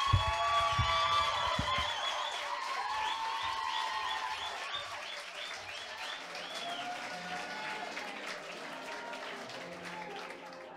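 Audience applauding, with music playing alongside; the applause slowly dies away and low musical notes come in after about seven seconds.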